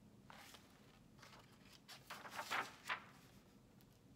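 Paper and cover rustling as a large hardcover picture book is lowered and its page turned: a string of short, soft rustles, loudest a little after two seconds in.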